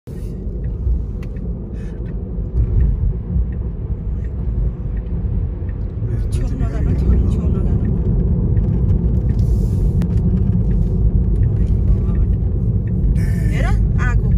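Car cabin road noise at freeway speed: a steady low rumble of tyres and engine that grows a little louder about halfway through.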